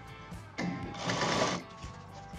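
Sewing machine stitching through layered pant fabric in one short run of about a second, starting about half a second in.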